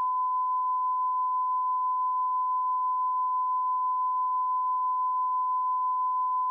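Censor bleep: a steady 1 kHz sine tone held unbroken, blanking out a man's speech.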